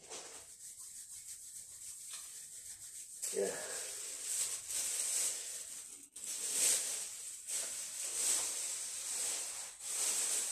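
Irregular rubbing or scraping strokes as hands work at something on a kitchen countertop. The strokes are faint at first and grow louder from about three seconds in.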